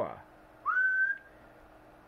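A short whistle that slides up and then holds one note for about half a second, starting about half a second in, over a faint steady hum. Just before it, a drawn-out voiced 'oh' into the microphone falls away.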